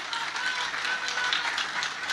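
A crowd clapping, with scattered sharp claps and faint voices calling out.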